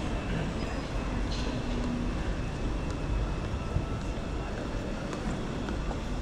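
Steady low rumble of a large airport terminal concourse, with faint distant voices and a few brief light clicks.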